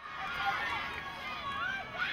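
Several high-pitched voices shouting and calling over one another on an outdoor soccer pitch, from players and spectators during play.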